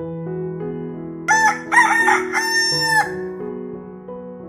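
A rooster crows once, loud, for about a second and a half starting just over a second in, over soft background piano music.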